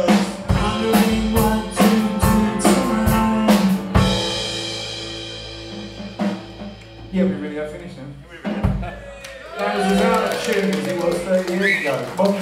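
Live rock band's drum kit and electric guitar closing out a song. Evenly spaced drum strokes over held guitar chords run for about four seconds and end on a final hit whose ringing slowly fades. One more drum hit comes near the nine-second mark, and voices follow near the end.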